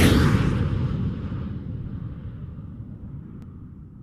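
Cinematic logo-sting sound effect: a deep boom at the very start that rumbles and slowly fades away.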